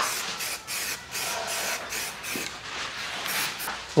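Aerosol spray can of primer hissing as a light second coat is sprayed on, with a few brief breaks between passes.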